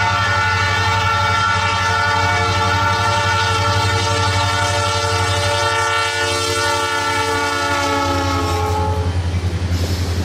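EMD diesel freight locomotives sounding a multi-note air horn in one long, loud blast as they pass close by. The chord drops slightly in pitch as the locomotives go by and cuts off about nine seconds in. Under it runs a steady low rumble of engines and wheels, which carries on as the freight cars roll past.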